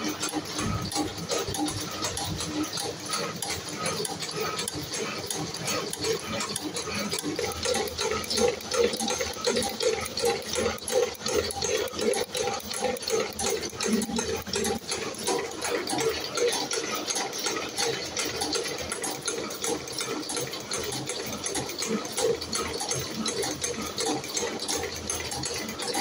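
Spring-coiling machine running, making a steady, quick, rhythmic mechanical clatter as it forms small compression springs from wire.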